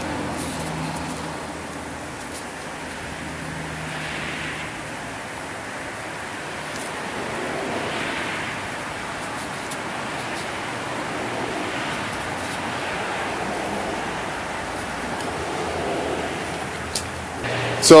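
Steady outdoor background noise that swells and fades slowly a few times, with a few faint ticks.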